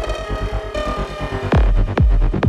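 Tech house music in a DJ mix. A fast stuttering bass and synth pattern plays with the treble thinning out, then a heavy kick drum drops back in about one and a half seconds in, beating about twice a second.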